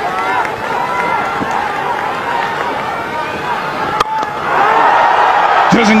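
Cricket stadium crowd noise with a single sharp crack of bat on ball about four seconds in, followed by the crowd's noise swelling as the ball goes up high.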